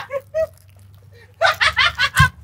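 Brief laughter and short voice sounds from people in a small vehicle cabin, over a faint low steady hum.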